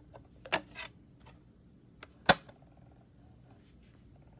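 Sylvania portable DVD player handled: a click about half a second in as the disc is lifted off the spindle, then a louder sharp snap a little after two seconds as the lid is shut. Faint ticking from the drive follows as it loads.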